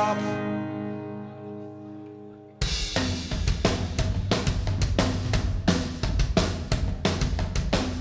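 A live band's final chord, with acoustic guitar, rings out and fades after the last sung line. About two and a half seconds in, it cuts abruptly to the full rock band playing the next song, with drum kit, snare and cymbals keeping a steady beat.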